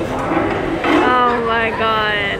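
A person's voice: a few short syllables, then one long drawn-out vocal sound held for about a second, its pitch falling slightly.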